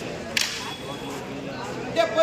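Market traders' voices overlapping in a crowd around tomato crates, with one sharp crack about a third of a second in.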